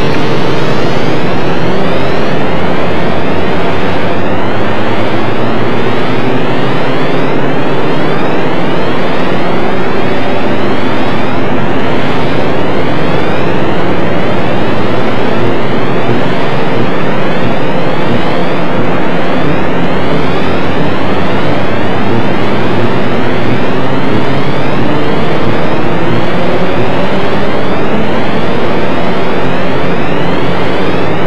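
Electronic drone from the DIN Is Noise software synthesizer: a dense mass of many overlapping tones gliding upward, over a steady low hum, loud and unbroken.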